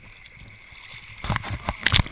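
Shallow water sloshing and splashing around wading feet on a wet plastic sheet: a faint steady wash at first, then a quick run of loud close splashes in the last second.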